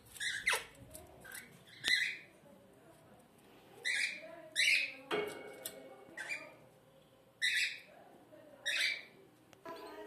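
African grey parrots squawking: about seven short, harsh calls, spaced roughly a second apart.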